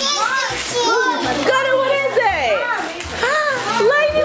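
Several young children talking and exclaiming over one another in high, excited voices, their pitch swooping up and down.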